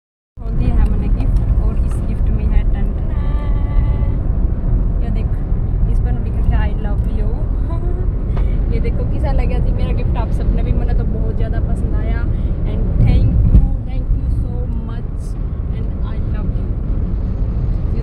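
Car cabin noise while driving: a steady low road and engine rumble heard from inside the car, swelling briefly louder about thirteen seconds in.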